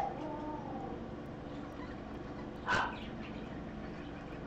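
Bird calls during feeding of a nestling: a short, thin whining call at the start, then one brief harsh squawk a little under three seconds in.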